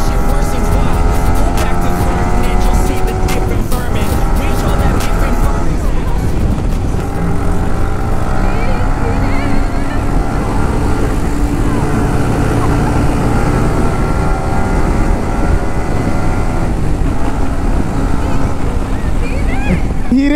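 Motorcycle engine accelerating. Its pitch climbs and drops back at several gear changes, under heavy wind noise on the riding microphone.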